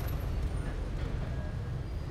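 Street ambience: a steady low rumble of road traffic.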